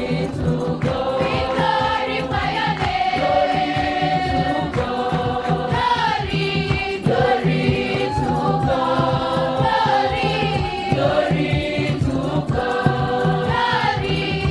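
A choir of schoolgirls singing a church song together, with hand-clapping and a drum keeping a steady beat.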